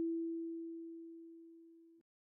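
A single kalimba note, E4, ringing and fading away steadily as one pure tone, then cut off abruptly at the end.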